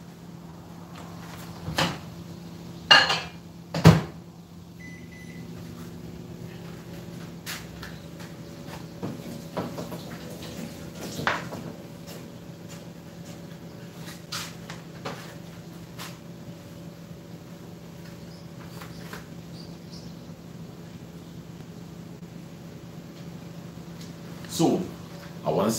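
A microwave oven heating a cup of coffee: a few knocks as the door shuts (the loudest about four seconds in), a short beep, then the oven running with a steady hum. Light kitchen clicks and clatter come over the hum now and then.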